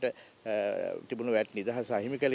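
A man speaking, drawing out one long vowel about half a second in before carrying on talking.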